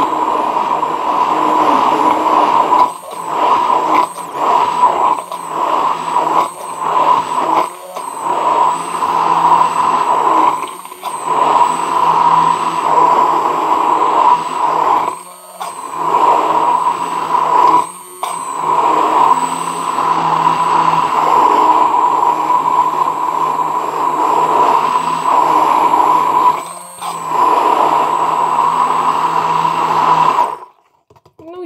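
Braun immersion blender running steadily in a plastic beaker, whipping powdered milk substitute, sunflower oil and water into imitation cream after extra powder was added to thicken it. The motor sound dips briefly about seven times along the way.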